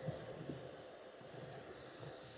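Faint, soft rubbing of a Black & Decker Stowaway SW101 travel steam iron's ceramic soleplate being slid over a towel.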